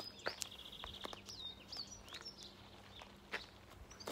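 Small songbirds singing: short high chirps and whistled notes, with a rapid trill about half a second in. A few soft clicks, the loudest near the end.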